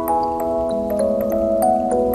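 Music box playing a slow melody, its bell-like notes struck about three a second and ringing on over one another.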